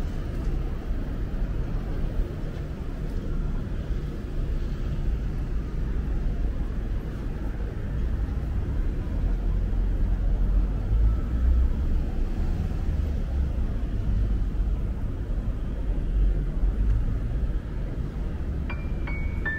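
City street traffic: a steady low rumble of road vehicles, swelling as a vehicle passes close about ten seconds in.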